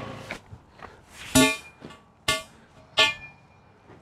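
Music: three short, sharp guitar stabs with a horn-like edge, each ringing out briefly, about a second apart.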